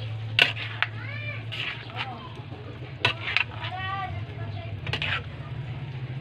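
A metal spoon clinks and scrapes against a metal pan as rice noodles are stirred, in repeated sharp knocks. Two short high calls that rise and fall sound about a second in and again near four seconds.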